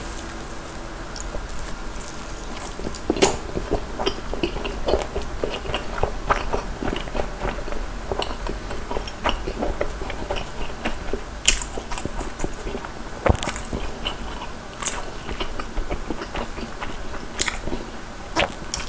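Close-miked chewing of sausage and rice cake from a sotteok skewer: continuous wet mouth clicks, with a few louder sharp smacks scattered through.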